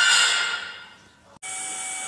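Background music fades out over about a second into near silence. A sharp click follows, then a steady low hiss with a faint tone.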